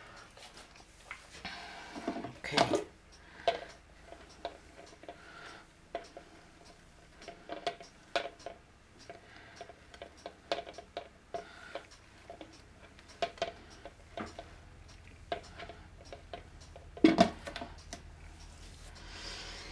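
Handling noises as a poured canvas is held by its edges and tilted on a round stand: scattered light clicks and taps, with two louder knocks, one about two and a half seconds in and one near the end.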